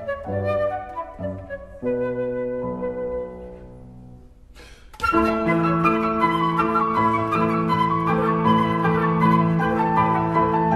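Concert flute and grand piano playing classical music. The first half has separate flute and piano notes that die away to a quieter held sound, then about halfway through both come in loudly together with a busy, dense passage.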